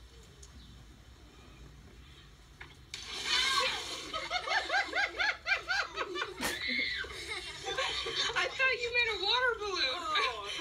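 Laughter: after a quiet start, a burst of rhythmic, high-pitched laughing begins about three seconds in and goes on in repeated waves.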